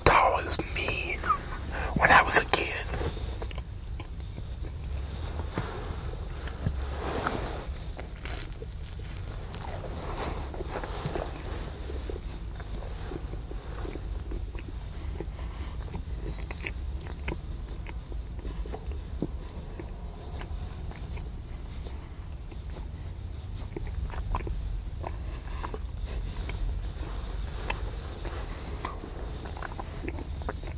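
Close-miked biting and chewing of food, with wet mouth sounds and small clicks, over a steady low hum.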